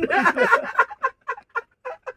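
Men laughing heartily, the laughter breaking into short pulsed bursts, about five a second, that thin out toward the end.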